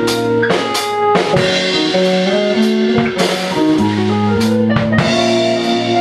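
A small band playing live together: drum kit, electric guitars, bass guitar and keyboard. Sustained bass and keyboard notes shift pitch every half second or so under scattered drum strikes.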